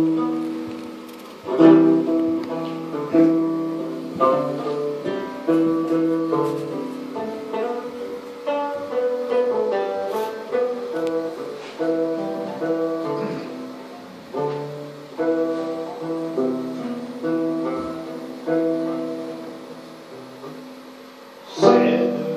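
A gourd-style early banjo played solo: a plucked melody of single notes that start sharply and ring away, with a louder stroke near the end.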